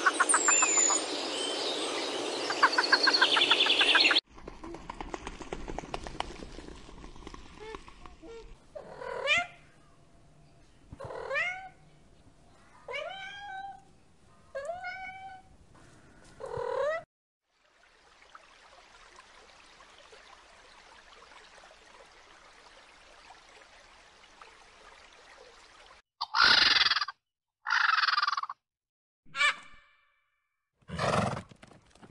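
A run of animal calls. It opens with about four seconds of loud bird calling with a fast rattle, from a toco toucan. Then a tabby cat meows five times, about two seconds apart, each meow rising then falling, and after a quiet pause there are three short harsh hissing bursts.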